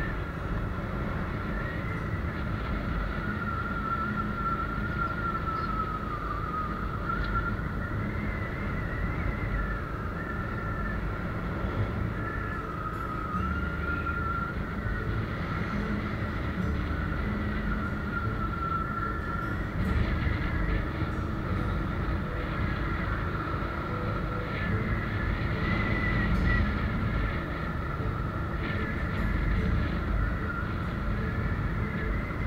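Motorbike riding along a road: a steady low rumble of wind and road noise, with a thin high whine that wavers slowly in pitch as the speed changes.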